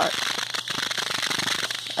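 A person's voice trailing through a hesitation mid-sentence, over a steady crackling hiss and some rustling from a handheld phone microphone.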